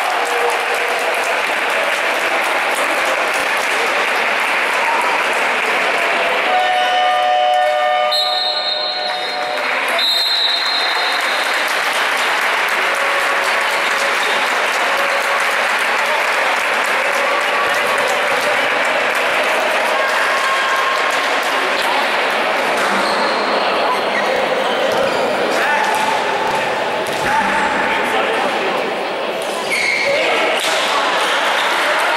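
Basketball game in a large sports hall: a steady din of voices from players and spectators echoing around the hall, with sneaker squeaks and a ball bouncing on the court.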